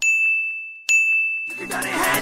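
Two bell-like dings of one high pitch, struck about a second apart, each ringing and fading away. Music starts up again near the end.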